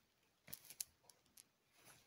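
Glow sticks being bent in the hand, giving faint crisp crackles: a small cluster about half a second in and another single crackle a little later.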